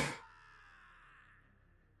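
Near silence: the last trailing sound of a man's voice dies away right at the start, leaving only a faint fading tone.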